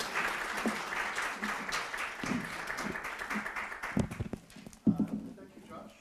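Audience applauding, the clapping dying away about four seconds in; a few louder knocks and short bits of voice follow.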